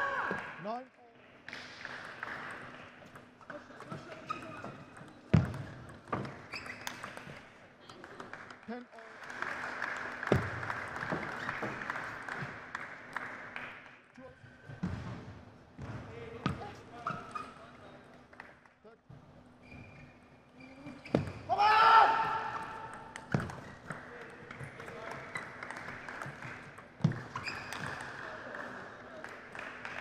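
Table tennis rallies: a celluloid-type ball clicking off rackets and the table in irregular runs of short sharp hits, with a player's loud shout between points, the loudest about two thirds of the way through.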